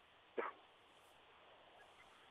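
Near silence on a telephone line, broken once, about half a second in, by a single short voiced sound.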